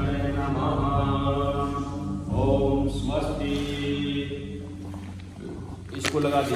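A voice chanting a Hindu mantra in long, held notes, with a steady low hum beneath.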